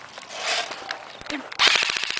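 Airsoft gun opening fire with a rapid burst of shots, a fast clatter of clicks starting about one and a half seconds in, after a few single clicks.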